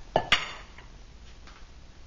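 Two quick metallic clanks a fraction of a second apart, the second louder and ringing briefly: a stainless steel bowl being set down on the bench.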